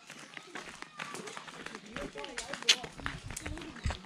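Faint, overlapping chatter of children's and adults' voices, with scattered light clicks.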